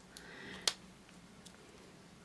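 Faint handling of a lipstick tube and its clear plastic cap, with one sharp click about two-thirds of a second in and a couple of fainter ticks.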